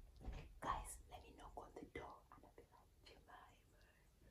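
Faint whispered speech, in short broken phrases that thin out after the first two seconds.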